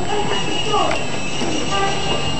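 Indistinct voices of passers-by talking over the steady background noise of a busy pedestrian street.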